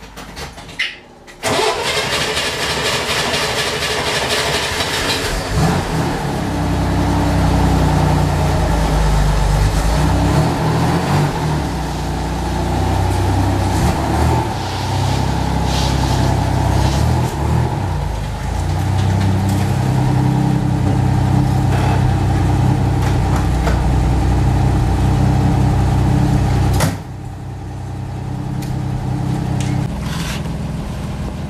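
A Chevrolet Corvair's air-cooled flat-six is started on the starter about a second and a half in and catches a few seconds later. It then runs and revs unevenly as the car pulls out, and its level drops sharply near the end.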